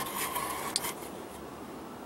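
Faint rustling of a sheet of paper being handled, with a brief tick a little under a second in, settling to a quiet steady background hiss.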